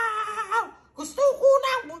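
A woman's belted singing voice holds a long high note that ends with a falling slide about half a second in. After a brief break come short, bending vocal runs. It is heard as playback from a computer screen's speakers in a small room.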